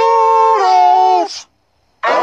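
Cartoon voice put through a 'G major' pitch-shift effect that layers it into a chord, held as one long howl-like note. It steps down slightly about half a second in and cuts off about a second and a half in.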